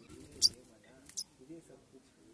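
Two short, sharp, high-pitched chip calls from a sunbird at its nest, the first about half a second in and loudest, the second just after a second, over faint background voices.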